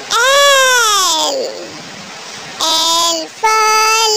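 A high-pitched, child-like voice calling out in sing-song. The first call coincides with the letter L appearing on screen: one long call that rises and then drops steeply in pitch, followed by a short, level call and the start of another.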